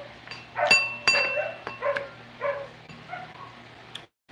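A metal spoon clinking against a ceramic bowl, two sharp strikes about a second in, each ringing briefly. Short high-pitched yelps repeat every half second or so in the background.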